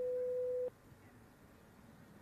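A single electronic beep at one steady pitch, lasting just under a second and cutting off sharply, followed by faint background hiss.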